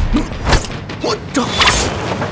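Fight-scene sound effects: a quick run of swishing strikes and hits, about five in two seconds, with a heavy thud about half a second in.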